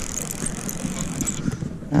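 Garcia Mitchell 308 spinning reel being cranked, its gears and bail giving a fast, even ticking whir as a fish is reeled in; the whir thins out about a second and a half in.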